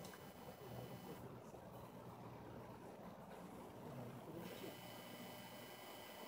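Near silence: faint outdoor background with a weak steady low hum.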